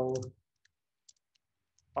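A handful of faint, scattered computer keyboard keystrokes as code is typed.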